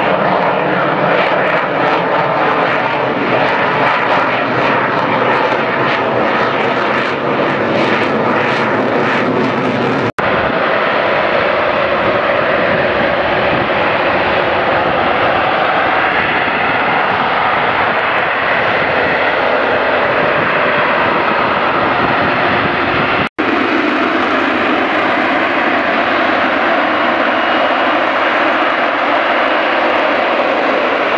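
Loud, continuous jet engine noise from an F-35 fighter in display flight, crackling through the first ten seconds or so. The sound drops out for an instant twice, at edit points.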